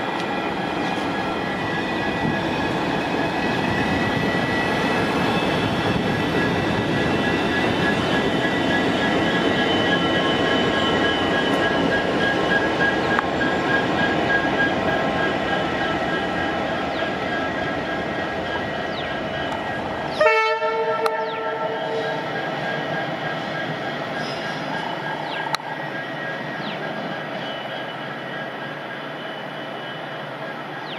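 ALCo diesel locomotives running past close by as a multiple consist: a loud, steady engine rumble with the clatter of wheels on the rails. About two-thirds of the way through, the sound changes abruptly and a locomotive horn gives a short blast. A quieter, more distant train sound follows.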